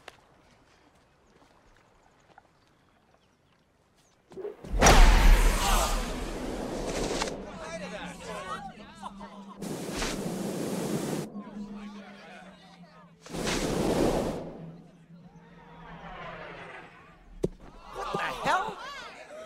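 Film sound effects of a golf drive: after a near-silent lead-in, a loud sudden hit about four and a half seconds in with voices shouting over it. Then come rushing whooshes as the golf ball flies down the fairway, and a sharp single knock near the end.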